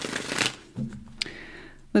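A tarot deck being riffle-shuffled by hand, the cards rustling, with a single sharp click about a second in.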